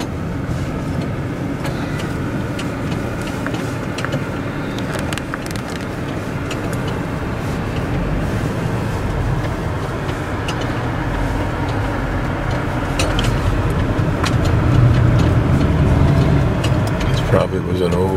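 A car driving slowly on town streets, heard from inside the cabin: steady engine and tyre rumble that grows louder about three-quarters of the way through.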